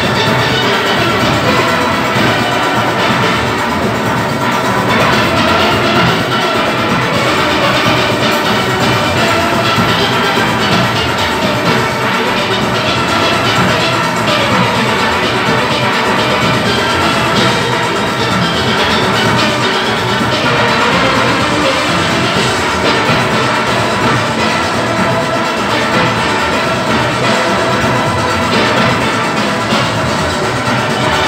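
A large steel orchestra playing: many steelpans, from small front-line pans to big racked pans, struck with sticks together in one dense, continuous, loud band of notes.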